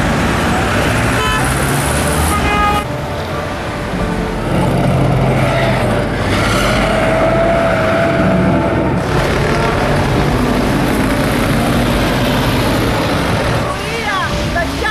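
Loud street noise of road traffic, with car horns sounding among it. The sound changes abruptly about three and nine seconds in.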